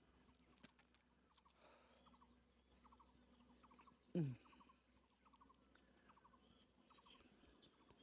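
Near silence outdoors, broken by faint, repeated short rattling chirps. About four seconds in there is one brief, louder sound that falls in pitch.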